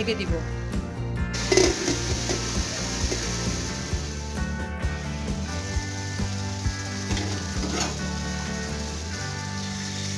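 Minced beef and diced potato filling sizzling and bubbling in a wok with added water, steaming as it simmers. The sizzle grows louder about a second in and then stays steady.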